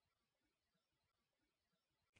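Near silence between repetitions of a spoken word.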